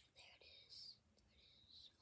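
Near silence, with two faint, soft hissy breaths from the person in front of the microphone.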